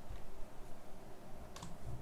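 One short click from a computer keyboard or mouse about one and a half seconds in, over a low steady room hum.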